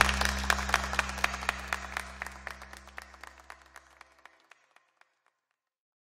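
Guests applauding with scattered claps, over a held low music chord; both fade away together over about four seconds.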